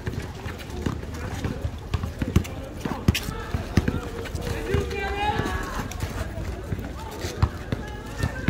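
Players running on an outdoor asphalt basketball court: irregular sneaker footfalls and scuffs with occasional thumps of the ball on the court. Voices call out and shout at intervals, most clearly around three seconds in and again around five seconds.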